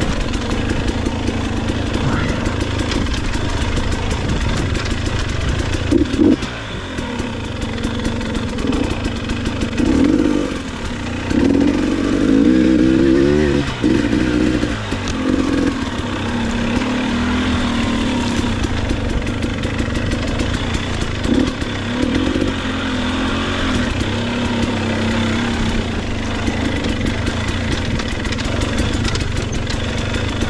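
Dirt bike engine being ridden on rough trail: continuous running with the revs rising and falling as the throttle is worked on and off, and the loudest revving a little before the middle.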